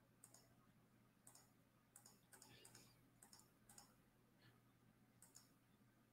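Near silence with faint, irregular clicks from computer mouse and keyboard use, about one or two a second, over a low steady electrical hum.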